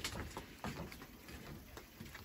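Faint, irregular light taps and clicks of footsteps on wooden deck boards, over a quiet outdoor background.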